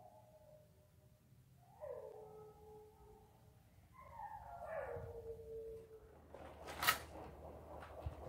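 An animal's cries, twice, each falling in pitch over about a second and a half, then a single sharp knock about seven seconds in.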